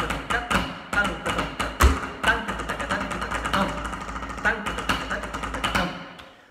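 Rudimental snare drumming with sticks: a dense run of sharp strokes and accents. A voice recites South Indian konnakol rhythm syllables over the drum.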